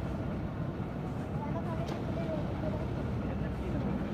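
A concrete mixer's engine running steadily with a low rumble, with faint voices of workers in the background and one short click about two seconds in.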